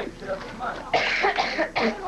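People's voices in the background, with a cluster of short, sharp vocal bursts about a second in.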